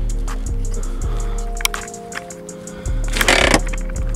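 Background music with held bass and chord notes. A short burst of noise comes a little after three seconds in.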